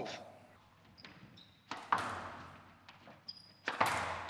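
Squash ball struck hard twice, about two seconds apart, each shot echoing around the court, with brief high squeaks of court shoes on the wooden floor between them.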